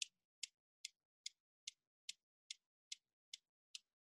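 Steel balls of a Newton's cradle clicking as three balls swing in and knock three out, a sharp click evenly spaced about two and a half times a second.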